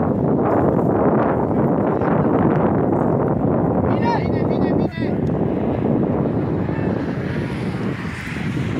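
Strong wind buffeting the camera's microphone, a loud steady rumbling noise. Just after the middle there is a brief high, wavering sound.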